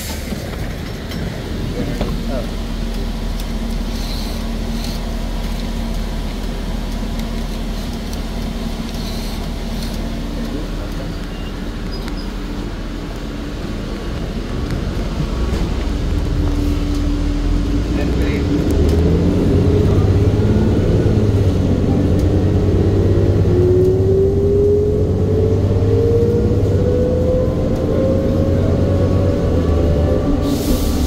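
Interior sound of a 2008 New Flyer C40LFR natural-gas transit bus: the engine idles with a low hum, then about halfway through it grows louder as the bus pulls away, with a whine rising steadily in pitch as it accelerates.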